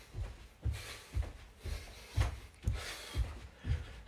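Feet landing on a carpeted floor during star jumps (jumping jacks): a dull thud about twice a second, eight landings in a steady rhythm.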